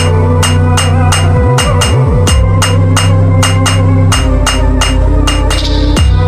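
Instrumental stretch of an electronic dance song. A steady percussion beat of about four hits a second runs over a deep bass that slides in pitch, with no vocals.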